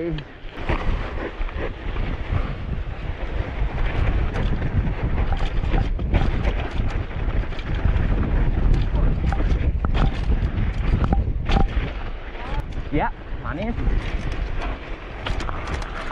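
Downhill mountain bike rolling fast down a rough dirt singletrack, heard from the rider's own bike: a continuous low rumble of tyres and wind on the microphone, broken by frequent knocks and rattles as the bike goes over bumps.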